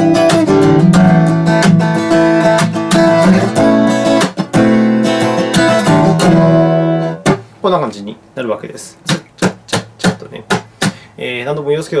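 Acoustic guitar strummed with a pick in rhythm, chords ringing under sharp percussive 'chat' hits where the side of the picking hand slaps and mutes the bass strings on the stroke. The chord strumming stops about seven seconds in, and only quieter scattered short strokes follow.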